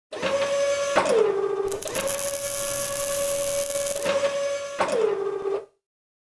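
Robotic-arm servo sound effect in an animated logo intro: a steady motor whine with mechanical clicks. The whine drops in pitch about a second in, comes back up with a hiss through the middle, drops again near the end, and cuts off suddenly.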